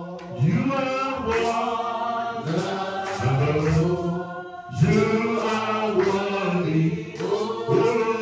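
A man singing a slow worship chant into a handheld microphone, in long held phrases that slide in pitch, with a short break about halfway through.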